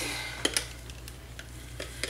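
A few light clicks and knocks as a stick blender is handled and brought to a plastic pot of soap batter; the blender is not yet running. A low steady hum sits underneath.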